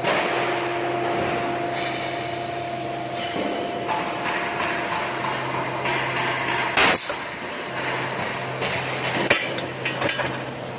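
Cable tray roll forming machine running, a steady low hum under constant mechanical noise, with a higher steady tone that stops about three seconds in. A loud metallic bang comes about seven seconds in and a sharper knock about two seconds later.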